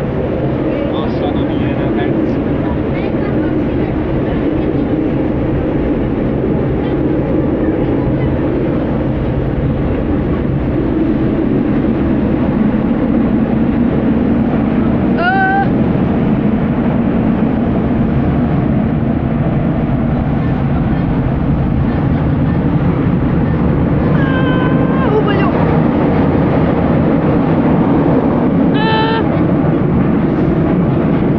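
Athens metro train running through a tunnel, heard from inside the carriage: a steady, loud rumble of wheels on rails and traction motors that builds slightly as the train goes on.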